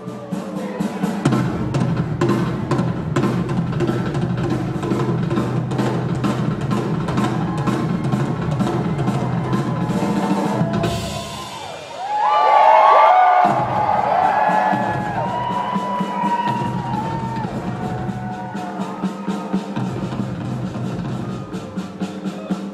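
Live rock drum kit solo: fast rolls and strokes across the drums, bass drum and cymbals. About halfway the drumming breaks off for a couple of seconds under a loud burst of audience cheering and whistling, then the steady drumming resumes.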